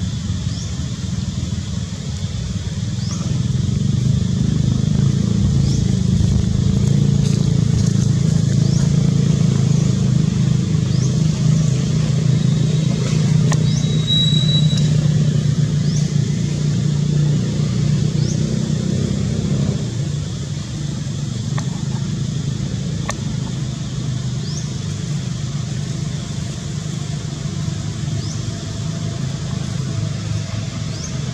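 A motor engine running steadily, a low hum that is louder through the first two-thirds and eases off a little about twenty seconds in. Short high chirps repeat every second or two over it.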